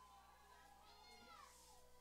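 Near silence: faint room tone, with one faint, falling whine-like tone about a second in.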